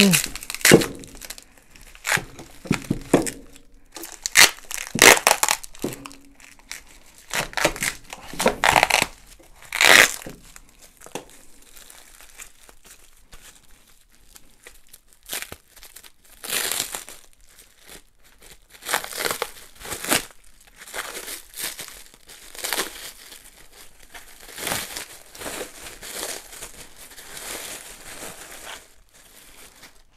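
Clear plastic stretch wrap crinkling and tearing in irregular bursts as it is pulled and handled around steel press parts.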